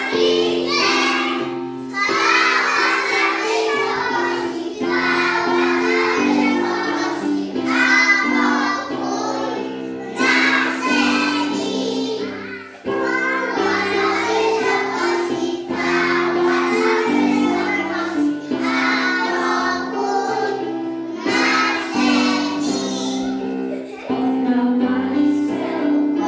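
A group of young children singing a song together over an instrumental accompaniment, in phrases with short breaks between them.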